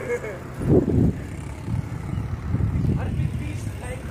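Wind rumbling on the microphone of a camera moving along a road, with a loud gust about a second in.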